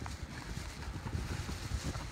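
Handling noise from a hand-held camera microphone: a low, uneven rumble with a faint click or two.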